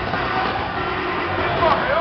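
Loud live band music through a PA system, with a man's voice over a microphone mixed into it.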